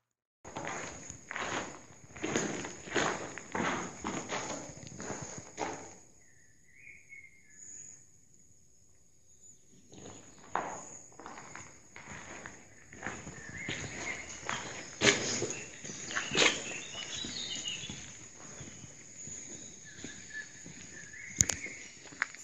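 Footsteps on a stony floor: steady walking for the first few seconds, a pause, then more uneven steps and scuffs, the loudest about two-thirds of the way in.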